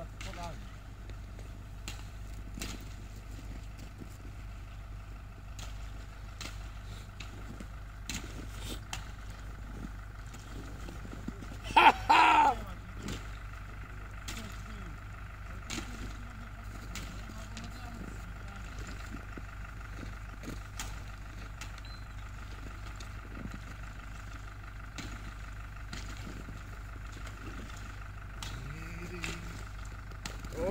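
Steady low wind rumble on the microphone with faint scattered clicks and crunches, broken about twelve seconds in by one short, loud yell from a person as a winter swimmer wades into ice-cold lake water.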